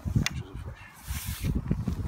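Handling noise as a carp rod and rig are picked up: a sharp click early on, then a brief rustle of a waterproof jacket about a second in, over a low rumble.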